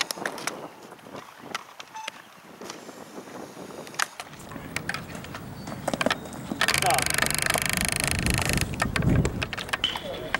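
Baseball catching drills: a few sharp pops of the ball meeting a catcher's mitt and gear, with distant voices. From about four seconds in a low rumble builds, then a loud rushing noise lasts about two seconds, followed by a brief spoken "Stop."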